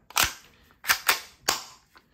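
Four sharp plastic clicks from the magazine of a spring-powered airsoft pistol being worked in and out of the grip: one, then three close together about a second in.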